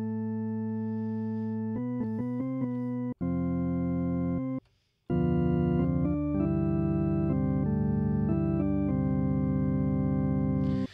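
Bitwig Studio's Organ, a drawbar organ built from added sine harmonics, playing a held note, then a quick run of notes and a held chord. After a brief silence about halfway, it comes back louder and fuller, with more drawbars up, playing held notes that change pitch.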